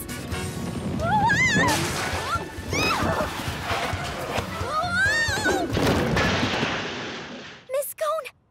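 Cartoon stampede sound effects: a rumbling crash-and-clatter under music, with cartoon voices crying out in wavering yells several times. The din dies away near the end.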